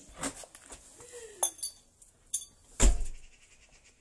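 Several short, sharp clinks and knocks of hard objects, spaced about a second apart; the loudest, near three seconds in, has a low thump under it.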